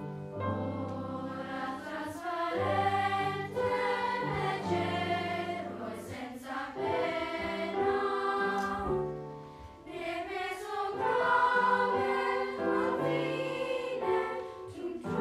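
Children's chorus singing a song in parts, with a piano accompaniment holding low notes underneath; the singing eases briefly about two-thirds of the way through before swelling again.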